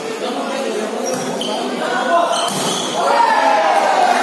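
Volleyball rally: a couple of sharp smacks of the ball being hit, among players' and onlookers' shouts and chatter echoing in a large covered court.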